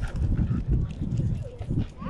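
Longboard wheels rolling over rough asphalt: a continuous low, uneven rumble with many small knocks.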